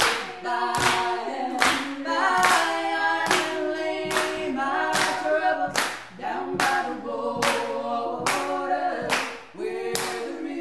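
Three women's voices singing together in a cappella harmony, with hand claps keeping a steady beat of roughly one clap every three-quarters of a second.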